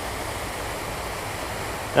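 Steady rushing hiss of falling water from a pond fountain, even and unbroken.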